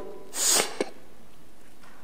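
A man's short, noisy breath close to the microphone, about half a second long, followed by a small click.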